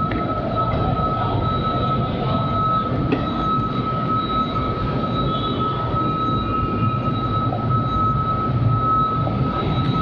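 Motorcycle engine running steadily with road and wind noise while riding in traffic, under a steady high-pitched whine.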